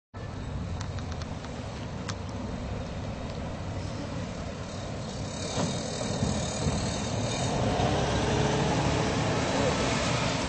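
Road traffic noise from a passing car, growing steadily louder over the second half as a minivan drives by close.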